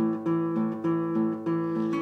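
Acoustic guitar strummed in a steady rhythm, the same chord struck about three times a second.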